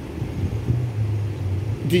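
Low, steady rumble of nearby car engines and road traffic.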